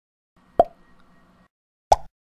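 Logo-intro sound effect: two short sharp hits a little over a second apart, the first followed by a faint steady hum that fades out.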